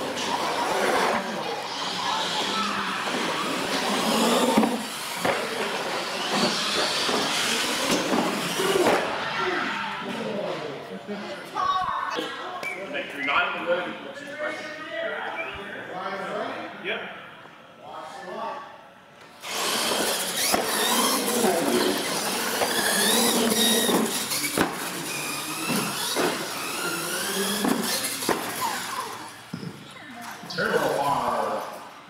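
Indistinct voices of people talking in a large echoing hall, mixed with the whine of electric R/C monster trucks running on a concrete floor. About ten seconds in, the higher whine drops away for several seconds, leaving mostly talk, then returns.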